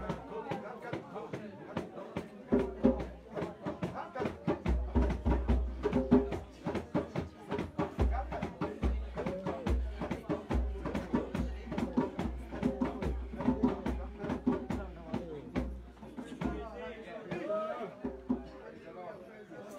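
A congregation singing a hymn together to a quick, steady percussive beat of sharp strikes, which thins out near the end.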